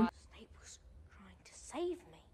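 Very quiet speech, mostly faint and whispery, with one short spoken syllable near the end.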